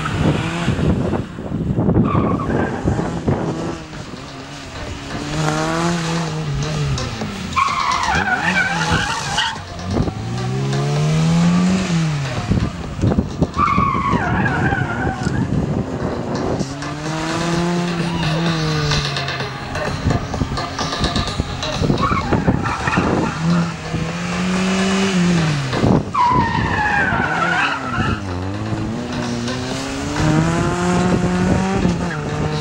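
ZAZ Tavria hatchback with a 1.6 engine, on slick tyres, driven hard through an autoslalom: the engine revs climb and drop again and again as it accelerates and brakes between the cones, with tyres squealing in several of the turns.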